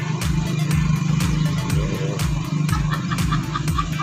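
Background music with a steady beat and bass.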